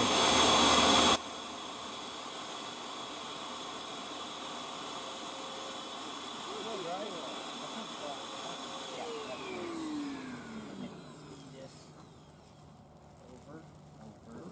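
Portable vacuum running with its hose inside a black plastic garbage bag, drawing the air out to shrink a foam cushion. A loud hiss for about the first second cuts off sharply, leaving a steadier whine whose pitch glides down around nine to eleven seconds in and settles into a fainter low hum.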